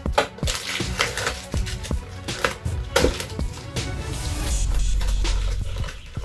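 Clear plastic bag crinkling and rustling in short bursts as it is pulled off a new tripod, over background music.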